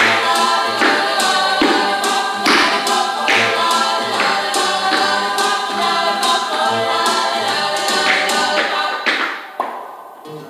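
A recorded song with group singing and a steady beat, struck about once every second, playing loudly for a dance routine; it drops in level near the end.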